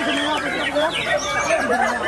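Dense, overlapping song of many caged white-rumped shamas (murai batu) singing at once: quick warbles and chirps layered over one another, mixed with human voices.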